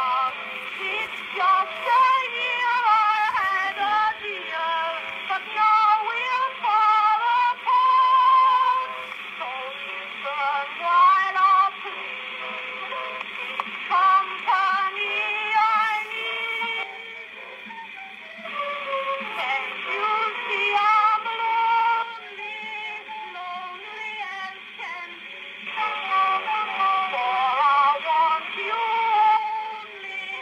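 Early acoustic-era recording of a woman singing a popular song with accompaniment. The sound is thin and narrow, lacking deep bass and high treble. The voice pauses briefly a few times while the accompaniment carries on.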